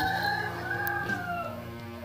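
Background music with a long drawn-out call, about a second and a half long, that slowly falls in pitch.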